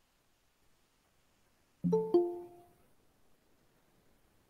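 A short two-note electronic chime about two seconds in, the second note lower than the first and fading quickly. Near silence around it.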